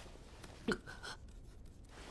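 Mostly quiet, with one brief vocal sound falling in pitch about two-thirds of a second in.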